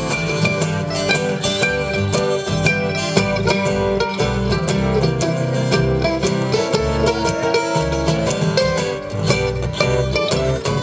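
Acoustic bluegrass band playing an instrumental break without vocals: picked mandolin over strummed acoustic guitars.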